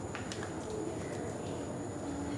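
A dove cooing in the background, a few low, short coos over a steady outdoor ambience.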